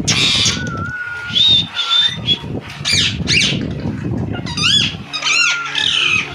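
Male albino Indian ringneck parrot calling: a harsh squawk, then short whistled notes, then a run of short arching screeches repeated about every half-second near the end.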